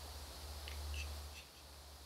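Low steady background hum that eases off about a second and a half in, with a few faint, short high chirps around the middle.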